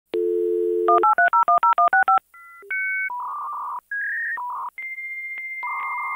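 A telephone dial tone, then about ten rapid touch-tone (DTMF) digits being dialed, then dial-up modem handshake tones: a long steady high answer tone running under blocks of buzzing data tones.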